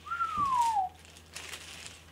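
A single falling whistle that slides down in pitch over most of a second, over the crinkle of a clear plastic sleeve being pulled off a fishing rod, with a light knock about halfway through the whistle.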